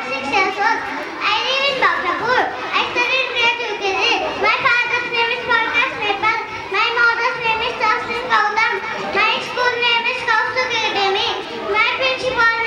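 A young girl's voice through a microphone, sing-song and unbroken, with level held notes and glides.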